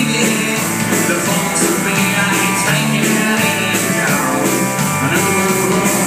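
A live rock band playing loudly and steadily: drum kit, electric guitar, acoustic guitar and bass guitar together.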